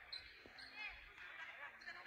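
Several people talking at once in a gymnasium, with a single low thud about a quarter of the way in.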